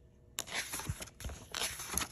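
Pages of a book being turned by hand: paper rustling and flicking that starts suddenly about half a second in and goes on in quick crinkles and flaps.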